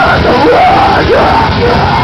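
Live heavy rock band playing loudly, guitars and drums, with a vocalist yelling over them.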